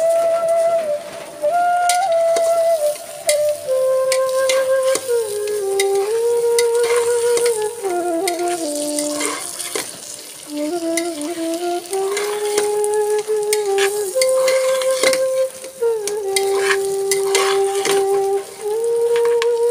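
A metal spatula stirring and scraping rice frying in an aluminium pressure cooker pot, with a steady sizzle and repeated short clicks of metal on metal. A slow flute melody plays over it throughout and is the most prominent sound.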